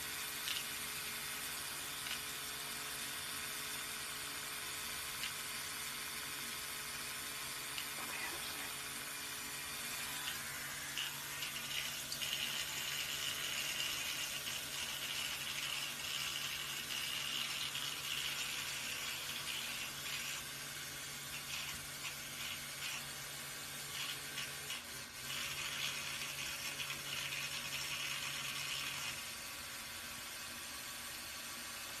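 Oscillating electric toothbrush running with a steady motor hum. From about twelve seconds in a brighter buzz rises over it as the spinning head works against a parrot's head feathers, with short breaks, and both stop about a second before the end.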